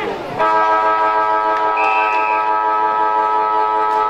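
Football ground siren sounding one long, loud, steady note that starts abruptly about half a second in and cuts off sharply at the end. This is the timekeeper's siren ending the quarter.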